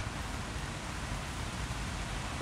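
Steady hiss of rain falling outdoors.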